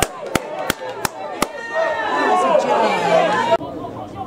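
Five sharp, evenly spaced claps, about three a second, followed by spectators chatting among themselves; the sound drops off abruptly near the end.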